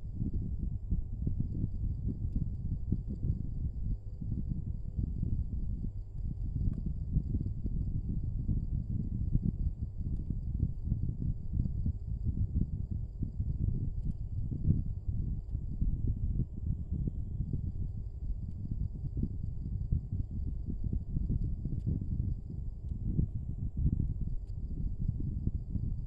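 Close handling noise from crocheting a small yarn bag: hands, hook and yarn working near the microphone make a low, irregular rumbling and rubbing with many small crackles.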